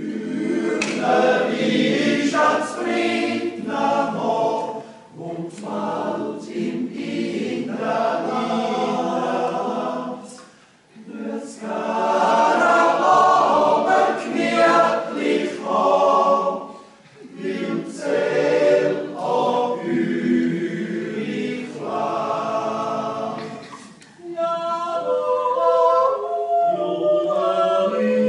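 Swiss yodel-club choir (Jodlerklub) singing unaccompanied in several voice parts, in long phrases broken by short breathing pauses.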